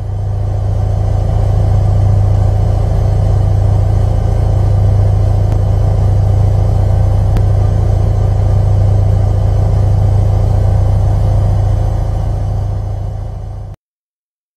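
A washing machine running with a loud, steady low hum that cuts off suddenly near the end.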